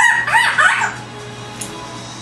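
African grey parrot calling: a short run of rising and falling whistled notes in the first second, then it stops.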